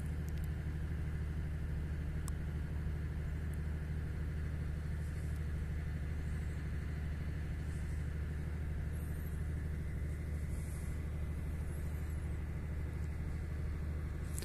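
A steady, low engine rumble that holds an even level throughout, with a few faint high chirps around the middle.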